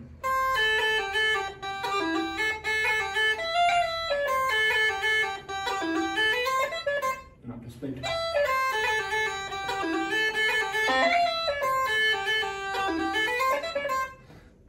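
Uilleann pipes playing a short slide phrase twice, each pass about seven seconds, with the long and short notes pushed towards even length.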